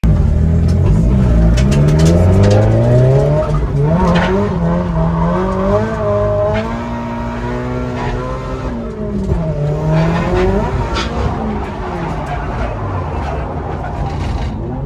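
A car engine heard from inside the cabin, revving hard on a circuit. Its pitch climbs over the first couple of seconds, then rises and falls repeatedly as the throttle is worked during drift practice.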